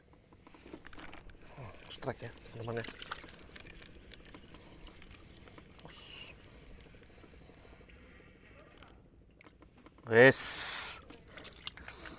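Angler fighting a hooked fish from a small wooden boat: faint clicks and handling noise from the rod and reel, with a short rising exclamation about two seconds in. About ten seconds in comes a loud burst of splashing and a rising shout as the fish comes to the boat.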